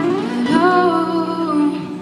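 Two acoustic guitars playing a held chord under a woman's wordless sung note, a hum that slides up about half a second in, holds for about a second with a slight waver, and fades near the end.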